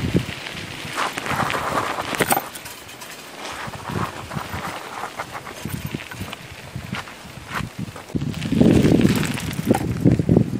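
Footsteps and rustling in dry grass and gravel, with irregular scuffs and knocks from a handheld camera being moved about; the noise is densest and loudest near the end.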